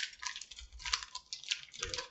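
Plastic candy wrapper crinkling as it is handled, a quiet run of irregular small crackles and clicks.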